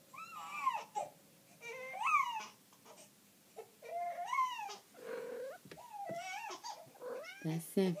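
A two-month-old baby's fussy, high-pitched cries and squeals: about five short rising-and-falling calls with pauses between them.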